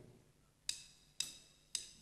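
Three sharp clicks about half a second apart, a steady count-in just before the song's music begins.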